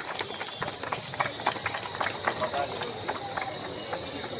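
Scattered hand claps from an audience, thinning out to a few irregular claps, over background voices and a faint steady high-pitched whine.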